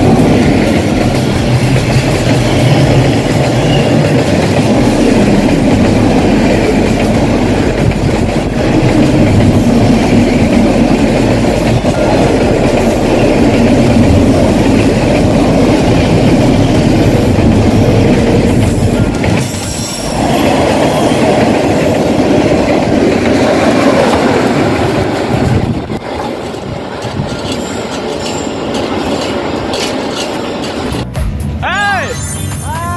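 A freight train of container wagons passing at close range, its wheels running loudly over the rails. The sound dips briefly about two-thirds through and is somewhat quieter near the end.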